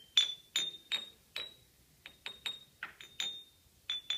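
Glass jars holding different amounts of water struck one after another with a wooden mallet, each tap a short glassy ping, the pitch changing from jar to jar with the water level. About a dozen quick taps in two runs, with a short pause about halfway.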